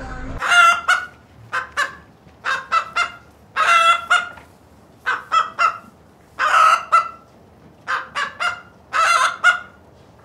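Poultry calls in short repeated groups, a longer call followed by one or two shorter ones, roughly once a second, over a quiet background.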